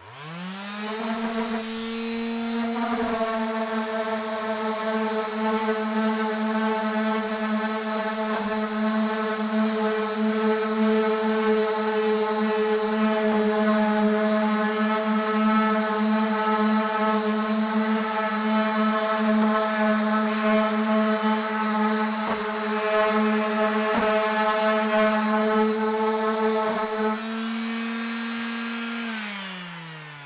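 Makita M9204 random orbit sander switched on and spinning up, then sanding the finish off a wooden door panel with 80-grit paper, a steady motor hum under a rough rasp. Near the end the pad is lifted off the wood, so the rasp drops away and the motor runs freely, then it is switched off and winds down.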